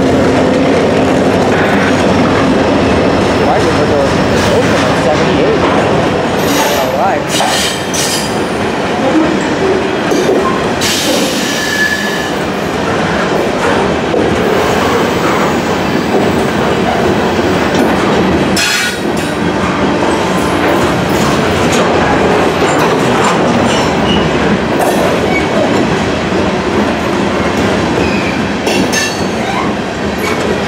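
Freight train of covered hopper cars rolling past close by: a steady, loud rumble and clatter of steel wheels on the rails. Brief high wheel squeals break through several times, around 7 to 8, 12, 18 and 29 seconds in.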